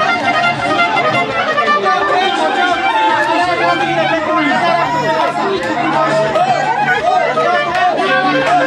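Wedding band music, a wavering melody over a steady low bass note, with a crowd of guests chattering over it.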